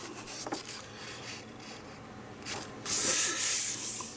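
Glossy magazine pages being turned by hand and pressed flat: a faint paper rustle, then a louder rubbing swish about three seconds in.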